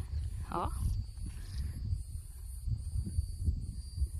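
Uneven low rumble of wind buffeting a phone microphone outdoors, with a faint high buzzing that breaks off at regular intervals above it.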